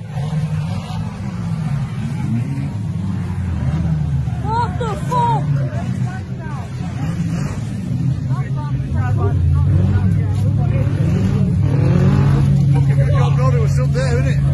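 Banger racing car engines running and revving, the pitch rising and falling over and over, settling into a steadier, louder drone about two-thirds of the way through.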